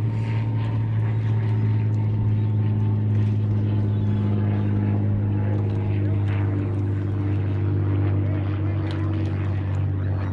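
A boat motor running in a steady, even hum.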